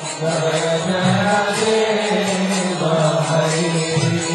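Devotional kirtan: a chanted, mantra-like melody sung over a sustained low accompaniment, with light percussion strikes keeping a steady beat.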